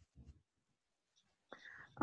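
Near silence, with a faint short sound about a quarter second in and a faint voice-like sound near the end.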